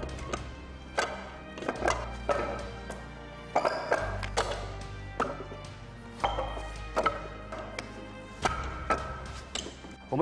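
Background music with a low sustained bass that changes note every couple of seconds, over a dozen or so sharp, irregular wooden knocks of hands and forearms striking the arms of a Wing Chun wooden dummy.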